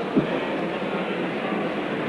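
Steady hubbub of a concert hall between numbers, with one short, low thump near the start.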